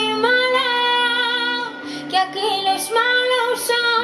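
Woman singing live into a microphone, drawing out long, wavering notes without clear words over a band accompaniment with low held notes underneath.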